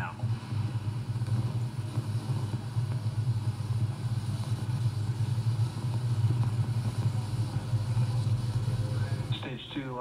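Steady low rumble of launch-pad ambient audio from a live rocket-launch broadcast, heard through computer speakers. It cuts off shortly before the end.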